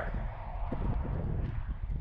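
Wind rumbling on the microphone, a steady low noise, with a few faint ticks and knocks.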